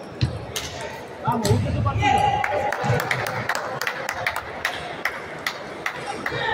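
Table tennis balls clicking irregularly against bats and tables from rallies going on at several tables around a sports hall, with people's voices in between.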